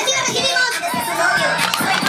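Loud recorded music played by a DJ over a loudspeaker: a song with high-pitched vocals, running on steadily.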